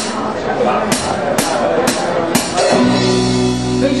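Room chatter with a few sharp clicks, then about three seconds in a live band with acoustic guitar and drum kit comes in playing sustained chords, and a voice begins the first sung line at the very end.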